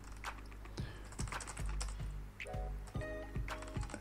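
Computer keyboard typing: irregular keystrokes as a line of code is typed, with background music playing underneath.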